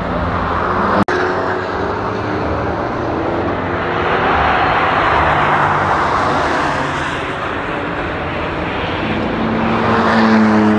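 Road cars being driven hard through a race-track corner: engines and tyres rushing past. The sound is loudest as a pair of cars goes by in the middle, with a brief dropout about a second in and another engine note building near the end.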